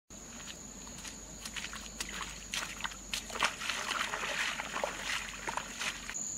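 Steady high-pitched insect drone, with scattered small splashes and squelches of water and mud.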